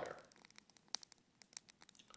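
Faint crinkling and rustling of a paper sheet handled in the hands, a scattering of small crisp clicks.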